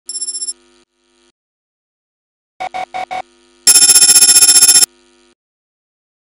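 Electronic intro sound effects: a brief fast-pulsing beep at the start, four short beeps about two and a half seconds in, then the loudest part, a fast-pulsing electronic ring lasting about a second.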